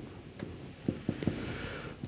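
Marker pen writing on a whiteboard: faint strokes with a few short taps as digits are written.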